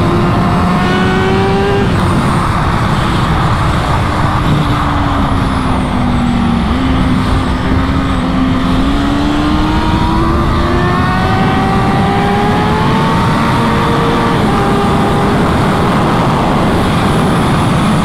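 2018 Kawasaki ZX-6R's inline-four engine running at speed on a racetrack, heard from onboard under a heavy rush of wind. The engine note drops slowly for the first several seconds, then climbs again from about halfway through.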